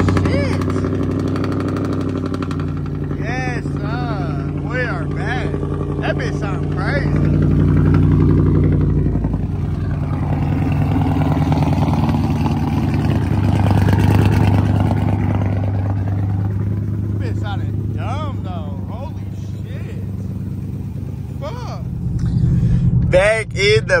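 Dodge Challenger Scat Pack's 392 Hemi V8 idling steadily.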